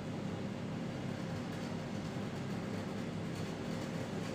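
Steady low hum with a faint hiss and a thin constant tone above it, unchanging throughout: background room or recording noise, with no speech.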